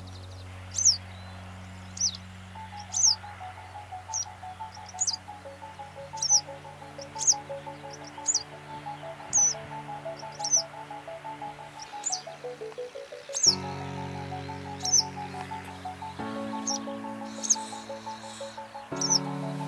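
Yellow wagtail giving a short, high, down-slurred call about once a second, over background music of slow held chords.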